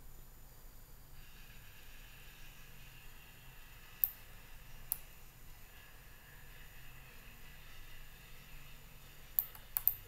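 Sharp computer mouse clicks, one about four seconds in, another about five seconds in, and two close together just before the end, over a faint steady background hum.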